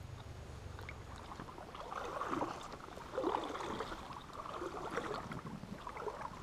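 River water sloshing and gurgling close to the microphone, stirred by the angler's hands and movements at the water's edge, in a few irregular swells about two, three and five seconds in.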